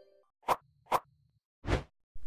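Logo-animation sound effects: two short pops about half a second apart, then a brief whoosh near the end.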